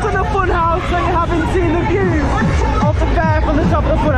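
Many riders' voices and fairground music during a spinning thrill ride, over a steady low rumble.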